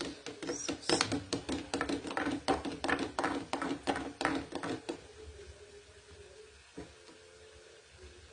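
A rapid run of sharp metallic clicks at a gas stove, about five a second for some four seconds, then stopping, with one more click later.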